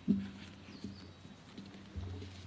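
A single sharp thump just after the start, followed by a steady low hum that slowly fades.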